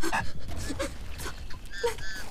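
Quick, breathy panting in a string of short gasps, with a brief high whimpering cry near the end.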